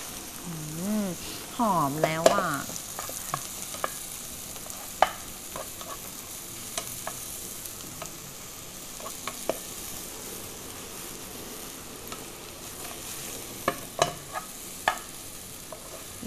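Mixed mushrooms and salmon sizzling in butter in a frying pan, stirred with a wooden spatula. A steady frying hiss runs under sharp taps of the spatula against the pan every second or so, with a quick run of taps near the end.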